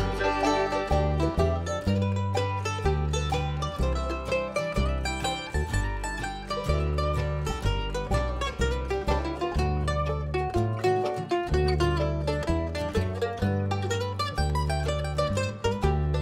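Bluegrass band playing an instrumental passage live: banjo, mandolin, acoustic guitar, fiddle and upright bass, with the bass plucking a steady beat under quick picked notes.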